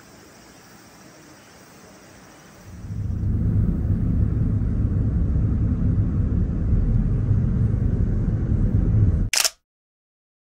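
Faint steady hiss, then about three seconds in a loud, steady low rumble of a car driving along a road, heard from inside the car. It ends near the end with a sharp click, after which the sound cuts out abruptly.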